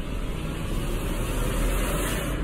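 Logo-sting sound effect for a TV channel's closing animation: a steady whoosh of noise over a deep low rumble.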